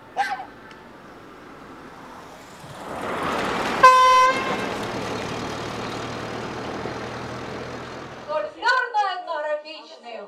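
An old Lada sedan approaching and driving past, giving one short honk of its horn about four seconds in as it passes geese on the road, then fading away; voices start near the end.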